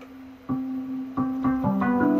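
Yamaha TX7 FM synthesizer module playing notes sent to it over MIDI from a controller keyboard through a USB MIDI interface. A single held tone is followed by new notes about half a second in, then several more in quick succession, overlapping into a chord near the end. The notes sounding show that the interface is passing MIDI to the TX7.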